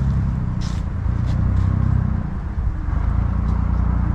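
Steady low drone of an engine running, with no change in pitch.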